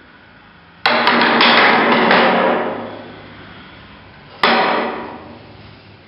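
A row of wooden placards toppling like dominoes onto a wooden bench: a quick clatter of wood on wood starting about a second in and dying away over a couple of seconds. A single sharp wooden knock follows later, also fading.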